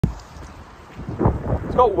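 Gusty wind buffeting the phone's microphone, a rough noise that swells in low rumbling gusts, with a man's voice starting just before the end.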